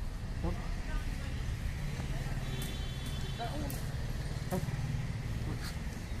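Outdoor background: a steady low rumble with faint voices, a few short clicks and a brief high-pitched tone in the middle.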